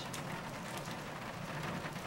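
Steady rain falling, a continuous even hiss without a break.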